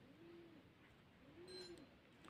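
Two faint, low, soft coos from a bird, each rising and falling in pitch, about a second and a half apart, with a faint high chirp alongside the second.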